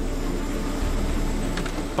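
Helicopter running, a steady deep rotor and engine drone.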